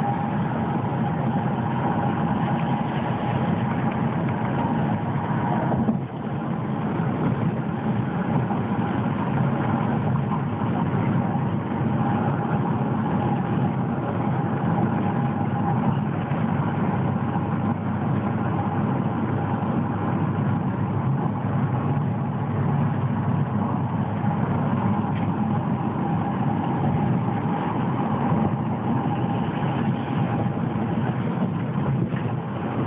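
Steady road and engine noise of a car travelling at highway speed, heard from inside the moving car, with a brief drop in level about six seconds in.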